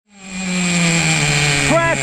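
Upgraded 3.3 nitro engine of a Traxxas Nitro Sport RC truck running with a high buzzing whine, its pitch sagging steadily as the engine dies and stalls.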